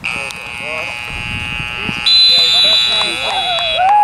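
A long, steady high-pitched tone, joined about halfway through by a second, higher and louder tone, with voices shouting underneath.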